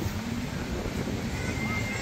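Steady low rumble of outdoor background noise, with faint voices of people around.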